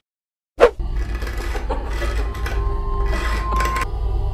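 Film-trailer sound effects: after a moment of dead silence, a single sudden loud boom, followed by a steady low rumble with a faint high ringing tone held near the end.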